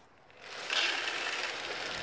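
Chicken feed pellets poured from a plastic bucket into a plastic feeder, a steady stream of small hard pellets starting about half a second in.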